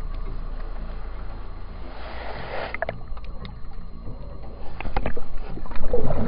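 Muffled underwater sound picked up by a camera held in the water: a low rumble of moving water with scattered sharp clicks and knocks. It grows louder and busier in the last second or so.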